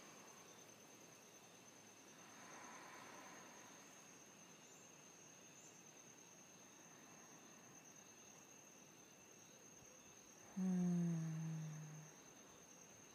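Insects trill in one steady high tone throughout. Near the end a woman hums a low, slightly falling note for just over a second.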